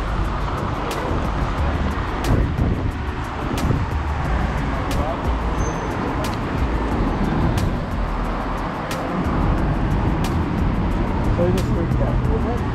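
City street ambience: steady traffic noise with wind rumbling on the microphone, and a faint, regular tick about every second and a quarter.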